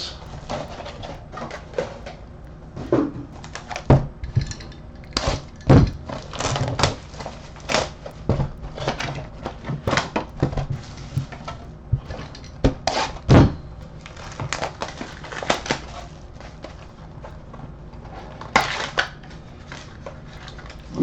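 Plastic shrink-wrap crinkling and tearing off small cardboard trading-card boxes as they are unwrapped and handled, with irregular crackles and a few louder knocks of boxes set on the table.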